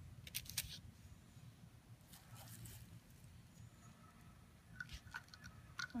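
Quiet, with a few faint clicks in the first second, a brief soft rustle a couple of seconds in, and two or three more faint clicks near the end.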